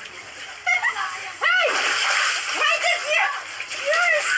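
Water splashing and sloshing in an inflatable kiddie pool as people thrash about in it, growing heavier from about one and a half seconds in. Short high-pitched vocal cries break out over the splashing.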